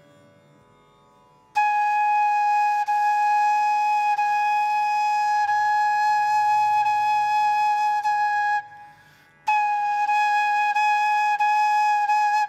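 Bamboo Carnatic flute playing long, steady held notes on one pitch: the first starts about a second and a half in and lasts about seven seconds, and after a short breath the same note returns near the end. The tone is clear, each note held on a full breath.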